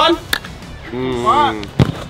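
A football struck hard off a player's foot on artificial turf, a loud sharp thud near the end. A fainter sharp knock comes shortly after the start.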